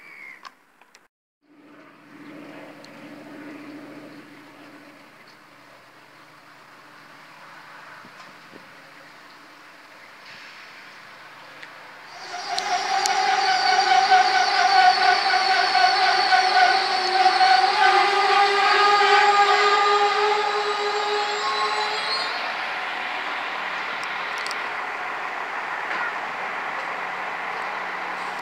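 Regional passenger train at a station platform. A quiet low hum is followed, about twelve seconds in, by a loud, steady whine of several tones that holds for about ten seconds and then eases off.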